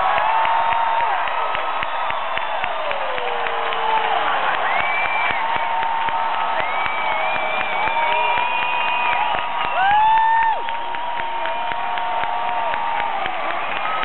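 Large crowd cheering and whooping, with scattered clapping, many voices rising and held; a louder shout stands out about ten seconds in.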